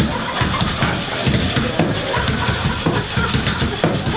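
Improvised stage percussion: a wooden stair railing beaten in a steady pulse and ice rattled in an ice bucket, with sharp clatters over the thumping beat.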